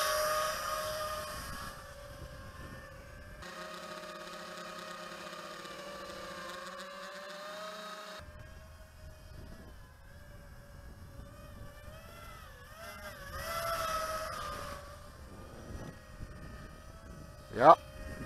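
Eachine Wizard X220 racing quadcopter in flight, its four brushless motors and propellers making a steady buzzing whine that wavers in pitch with the throttle. It is louder near the start and swells again about thirteen seconds in.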